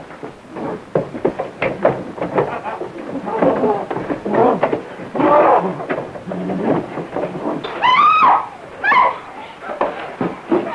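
A scuffle between two women: clattering knocks and bumps, then shrill cries. The loudest is a long rising shriek about eight seconds in, with a shorter cry just after.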